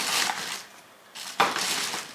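Plastic packaging of press-on nails rustling and crinkling as it is handled. There are two spells of it, with a short quiet pause about a second in.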